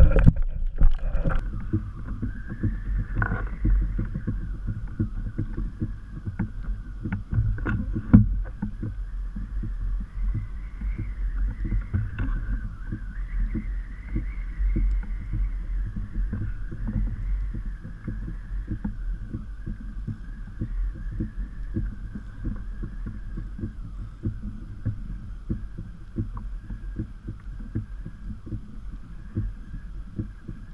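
Water lapping and slapping against a plastic kayak hull in a dense patter of small knocks, with louder knocks at the start and about eight seconds in. A faint wavering hum sits above it.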